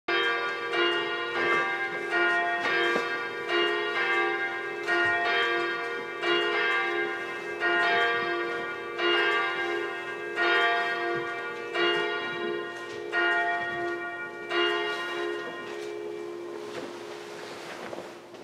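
A church bell ringing, struck about once a second with each stroke ringing on into the next; the last stroke comes near 15 s and then dies away.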